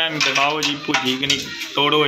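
Roasted peanuts and a plastic basket clattering against an aluminium platter: a quick run of short clicks through the first second and a half, with a voice going on behind.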